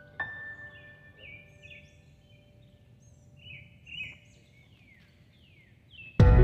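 Birds chirping outdoors, a string of short chirps that fall in pitch, heard faintly. A last sustained piano note of background music sounds just after the start and fades away.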